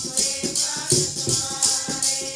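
Sikh devotional kirtan music: held harmonium tones under regular tabla strokes, with a jingling metal percussion instrument shaken in time, about three pulses a second.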